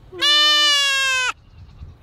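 Nigerian Dwarf goat doeling bleating once: one loud call about a second long, dropping in pitch at its very end.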